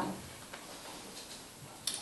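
Quiet room tone with a few faint ticks, and a sharp click just before the reading voice resumes near the end.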